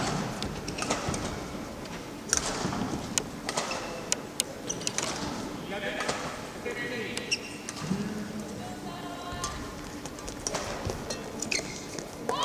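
Indoor badminton hall between and into a rally: scattered sharp clicks of rackets striking shuttlecocks, a few short squeaks from shoes on the court, and a murmur of voices in the background.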